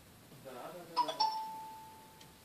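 A two-note chime sounds about a second in: a higher note, then a slightly lower one a fifth of a second later. The second note rings on and fades over about a second.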